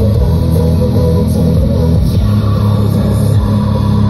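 Music with strong bass, played loudly through a BMW E46's newly installed Bavsound front door speaker behind the Harman Kardon grille, as a sound check of the new speaker.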